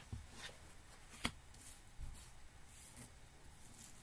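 Faint handling of a tarot deck, cards being turned and laid down, with one sharp click about a second in.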